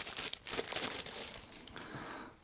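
Thin clear plastic bag crinkling and rustling in irregular bursts as a remote control is pulled out of it.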